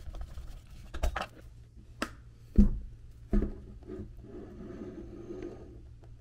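A few separate knocks and thumps of an iMac being handled and laid flat on its back on a table, the loudest about two and a half seconds in.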